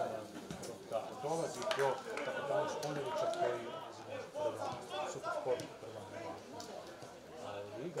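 Match sound from a football pitch: indistinct voices of players, coaches and spectators calling and chatting, with no clear words, plus a few sharp knocks.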